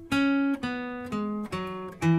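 Steel-string acoustic guitar played with a pick: single notes of the E major pentatonic scale walked downward, four notes about half a second apart, each ringing briefly.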